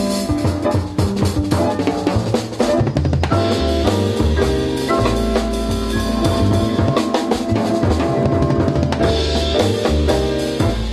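A small jazz group playing live: a double bass plucked in a low line under a drum kit. There is a quick run of drum strokes about three seconds in.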